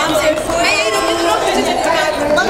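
Crowd chatter: several people talking over one another at once.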